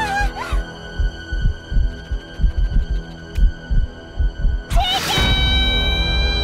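Tense cartoon underscore: a run of low heartbeat-like thumps, about three a second, under sustained held tones, as the character panics. Almost five seconds in, a loud, high sustained chord swells in.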